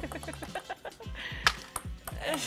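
Background music with a repeating falling bass line, and a ping-pong ball clicking sharply on the table or the cup once, about a second and a half in.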